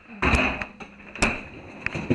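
A freezer door pulled open with a short rush of noise, then a sharp knock about a second later as the freezer drawer is handled.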